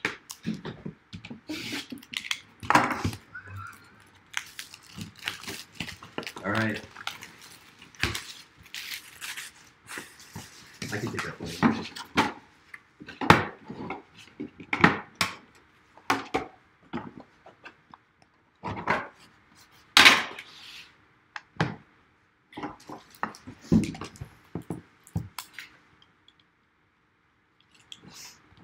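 Hands handling and opening a cardboard trading-card box on a tabletop: a string of irregular knocks, clicks and scrapes as the box is gripped and its lid worked off.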